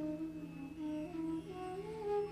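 Slow meditative background music: a long held, humming or flute-like note over a steady low drone, the note bending gently up in pitch near the end.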